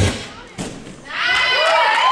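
Floor-routine music cuts off, a single thud comes a little after half a second in, and from about a second and a quarter spectators start cheering with long, drawn-out whoops.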